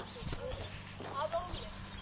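Horse's hooves thudding softly on a rubber-chip arena surface, with a brief sharp hissing noise about a third of a second in.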